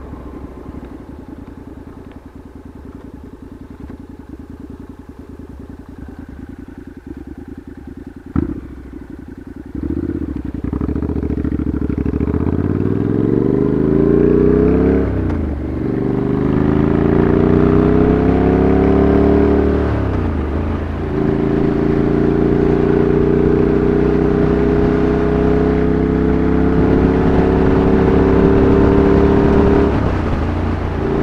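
Motorcycle engine running low and quiet at first, with a single sharp click about eight seconds in. It then accelerates through the gears, rising in pitch with two upshifts about five seconds apart, and settles into a steady cruise for the last third.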